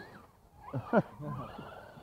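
A man's short laugh-like vocal burst with quick swoops in pitch, just under a second in.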